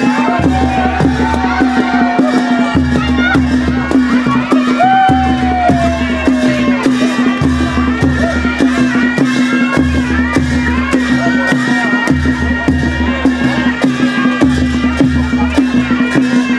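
Traditional Nepali baja music for dancing: a steady drone over a deep drum pattern that repeats about every two seconds, with sharp percussion strokes about three times a second. Two long falling melodic glides stand out, near the start and about five seconds in.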